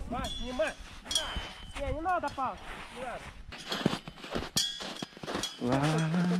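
Short wordless vocal calls from the hikers, rising and falling in pitch, in a few quick bursts. Scattered sharp steps and knocks come from boots on wet, packed snow.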